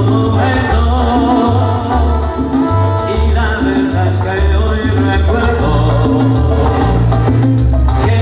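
A salsa song plays loudly over a sound system, with a bass line changing notes every half second or so, steady percussion, and a man's voice singing into a microphone.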